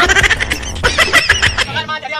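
A wavering, bleat-like vocal sound, repeated in short stretches, over background music that drops out near the end.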